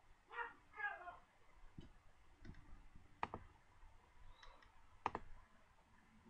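Computer mouse clicks, about two seconds apart, each a quick double click, while files are opened on the computer. Near the start there is a short, wordless murmur from a voice.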